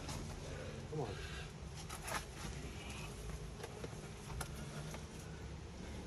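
A climber moving on the rock: a few brief taps and scuffs of hands and shoes on the holds, and a short vocal sound of effort about a second in, over a low steady outdoor background.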